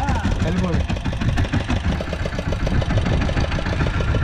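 Fishing boat's engine running steadily at low revs, a continuous low rumble of rapid, even pulses, with brief voices over it in the first second.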